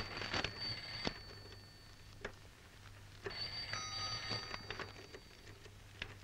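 Paper pages of a ledger being turned and rustled, under a faint high ringing tone heard twice: about a second at the start and about two seconds from the middle. A low steady hum runs underneath.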